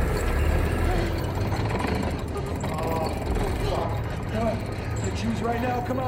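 Film soundtrack: voices crying out and shouting in panic, not forming clear words, over a steady deep rumbling drone.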